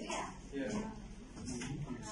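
Indistinct talking in a room, words not made out.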